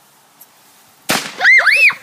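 A consumer firework goes off on the lawn with one sharp bang about a second in, followed right after by two short, high shrieks.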